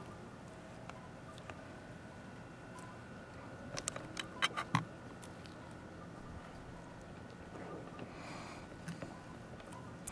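A few faint, short clicks and taps, bunched about four seconds in, from gloved fingers pushing dissecting pins through an opened grasshopper into a dissecting tray, over a faint steady room hum.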